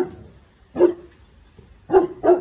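Boerboel barking: three short barks about a second apart.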